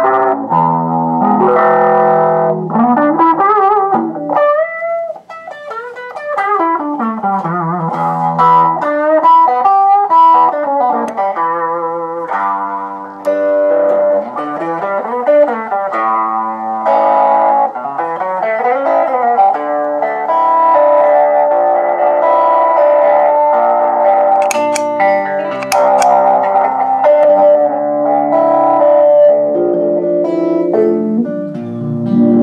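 Electric guitar played through a Fender Pour Over envelope filter pedal: picked notes and chords with a wah-like filter sweeping up and down through each attack. In the second half the playing turns to denser, held notes with a driven, distorted edge as the pedal's frequency and Q knobs are adjusted.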